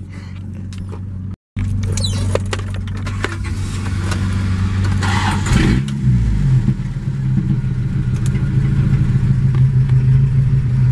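Car engine running, heard from inside the cabin, with a short silent break about a second and a half in; about six seconds in the engine note rises and settles into a louder, steady drone as the vehicle gets under way.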